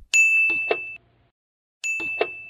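Sound effect of a bright, bell-like ding with a short click partway through, heard twice: once just after the start and again near the end. It is the sound of an animated Subscribe-button click.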